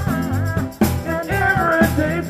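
A small live band playing a soul groove: a drum kit keeps a steady beat under sustained keyboard chords and a keyboard bass line.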